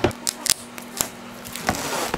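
Scissors snipping into the plastic shrink-wrap of a poster frame, a few short, sharp cuts at uneven intervals.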